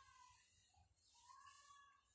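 Faint, drawn-out high calls from an animal, two in a row, the second longer, over near silence.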